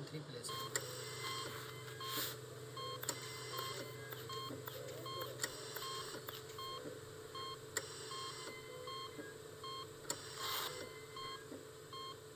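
Hospital ward ambience: electronic patient-monitor beeps repeating about every two-thirds of a second in more than one pitch, over a steady equipment hum.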